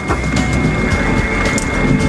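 Airliner flight-deck noise while taxiing after landing: a steady rumble with a thin high whine running through it, and scattered sharp knocks and clicks.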